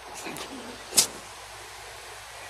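A single sharp click or knock about a second in, over a steady background hiss.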